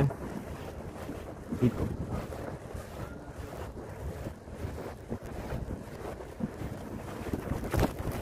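Wind buffeting a phone microphone on a moving bicycle, a steady low rumble, with a brief knock near the end.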